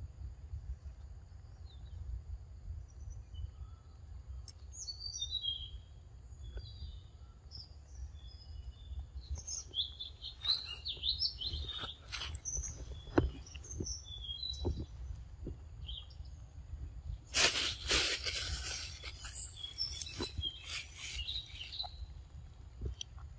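Birds chirping in short high calls, starting a few seconds in and thinning out after the middle, over a low steady rumble, with scattered sharp clicks. About three-quarters of the way through comes a loud few seconds of rustling and crackling, the loudest sound.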